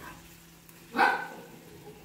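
A single short animal-like call about a second in, over low room tone.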